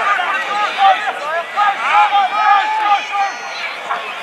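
Several men's voices shouting and calling over one another, the words not clear, as players and onlookers call during open play in a rugby league match.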